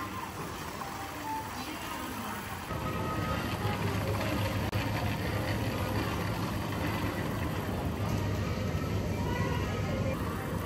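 Music playing, joined from about three seconds in by a steady low rumble from a shopping cart's wheels rolling over a smooth store floor.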